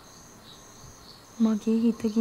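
Crickets chirping faintly in a steady, repeating high pulse. About a second and a half in, a song starts with a loud held sung note.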